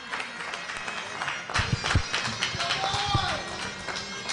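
Ice rink sounds during a break in play: skaters' blades on the ice and scattered sharp clicks and knocks, with faint music and distant voices in the arena. A few heavy low thumps come around the middle and are the loudest sounds.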